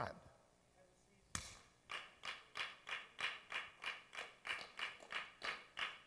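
One sharp clap, then steady rhythmic hand-clapping at about four claps a second.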